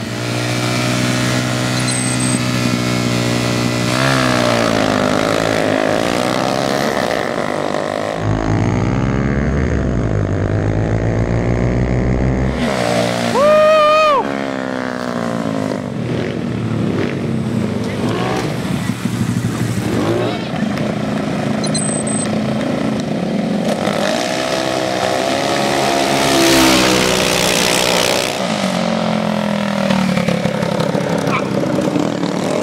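Small modified scooter and mini-bike engines revving and accelerating hard, their pitch climbing and falling several times as they race past. About halfway through comes a brief, loud shout.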